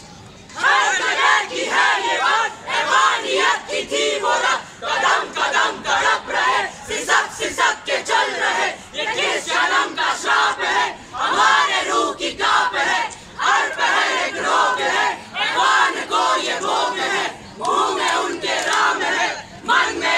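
A group of street-play performers shouting together in unison, loud, short shouts one after another, starting about half a second in.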